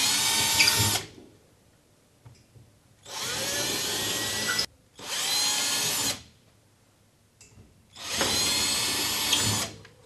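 Cordless battery drill with a 5.5 mm bit drilling holes into the wall in four bursts of one to two seconds each. The first is already running and stops about a second in, and the others follow with short quiet gaps between.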